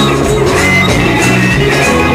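Live folk-rock band playing loudly: strummed acoustic guitar over a drum kit with repeated drum and cymbal hits.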